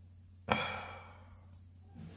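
A man's heavy, exasperated sigh: one sudden breathy exhale about half a second in that trails off over about a second.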